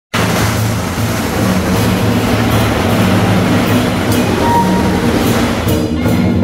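Loud, continuous clashing noise over a low steady hum from a temple street procession. It breaks off shortly before the end into separate percussion strikes.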